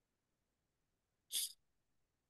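A single short breathy burst from a person about a second and a half in, otherwise near silence.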